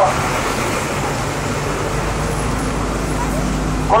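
Street traffic: motor vehicle engines running at an intersection, with a low steady engine hum that grows stronger about halfway through.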